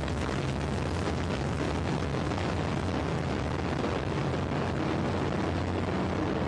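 Delta II rocket at liftoff, its liquid-fuelled main engine with its two vernier engines and three ground-lit solid rocket boosters all firing: a steady, even rumbling roar with crackle.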